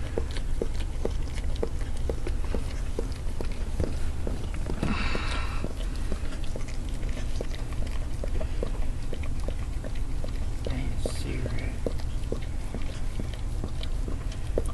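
A mother dog licking and chewing at her newborn puppy's amniotic sac to break it open, making a steady run of wet licking clicks, about three a second.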